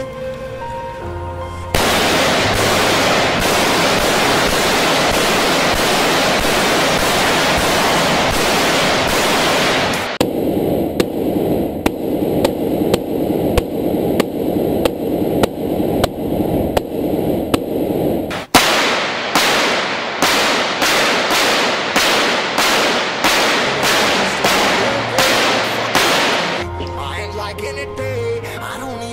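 Sustained automatic gunfire hitting an armoured SUV's windshield, then heard muffled from inside the car's cabin, then a run of separate shots about two a second. Song music plays at the start and again near the end.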